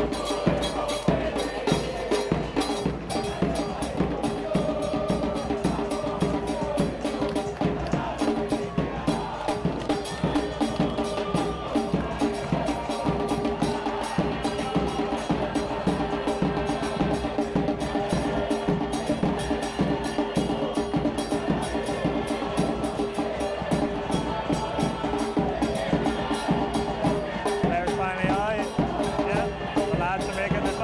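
Football supporters' drums beating a fast, driving rhythm, with fans singing over them. It keeps going at an even loudness.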